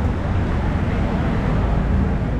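Steady street noise on a busy city road, mostly a low traffic rumble.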